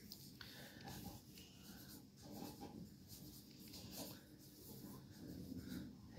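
Near silence with faint rustling of a cotton sock being pulled onto a foot.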